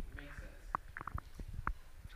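Faint, indistinct voices and scattered short clicks and knocks in a room, with no clear words.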